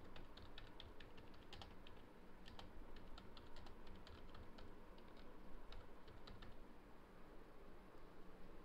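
Typing on a computer keyboard: faint, irregular key clicks that stop about a second and a half before the end.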